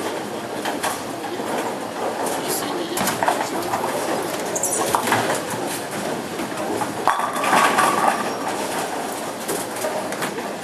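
Bowling alley din: balls rolling and pins clattering on many lanes, with sharp crashes every second or two and background voices.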